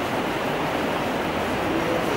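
Steady rushing background noise, fairly loud and even, with no clear tones or voice.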